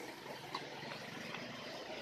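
Steady outdoor background noise, with one faint knock about half a second in.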